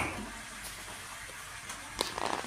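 A steady, even hiss, with a brief louder blip at the start.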